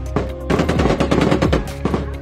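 A rapid burst of automatic gunfire, many shots a second, starting about half a second in and stopping just before the end, heard over background music with a beat.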